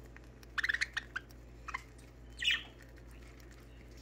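Pet budgies chirping while they feed from a hand: a quick run of short high chirps about half a second in, a few single chirps after, then one louder, harsher call about two and a half seconds in.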